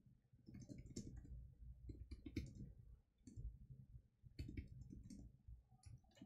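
Faint computer keyboard typing: short bursts of keystrokes with brief pauses between them.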